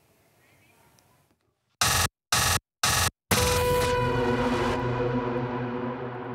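Alert signal of the 'Pronađi me' missing-child emergency alert system: three short, loud blasts about half a second apart, then a long ringing tone that slowly fades.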